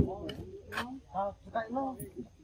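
A few short voiced syllables, with a sharp click at the very start.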